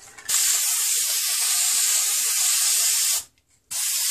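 Aerosol can of gold spray paint hissing as it sprays: one steady burst of about three seconds, a short pause, then spraying again near the end.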